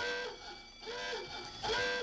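Electronic alarm tone from the film's security-locker panel, a steady pitched tone at the start and again near the end, with softer wavering tones between.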